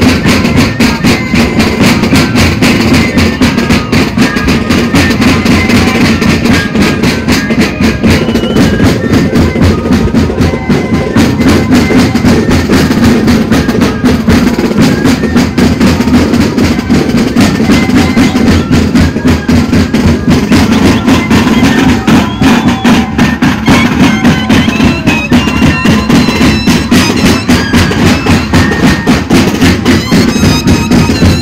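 A moseñada band playing: massed moseño cane flutes carrying a steady melody over a continuous, even drum beat.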